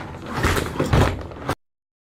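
Rummaging and clattering as things are shoved and knocked about during a search, with several short knocks and a few dull thuds; the sound cuts off abruptly about one and a half seconds in.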